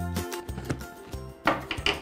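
Background music, with a few short rustling scrapes of a cardboard box being opened near the end.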